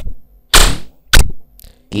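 Three sharp bursts of distorted glitch noise: a short one at the start, a longer one about half a second in, and another short one just after a second.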